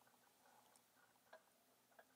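Near silence, broken by two faint small clicks, about a second and a half in and again at the end, from the closed Timascus-handled flipper knife being handled in gloved hands.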